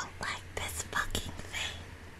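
A person whispering, a string of short breathy syllables that trail off near the end.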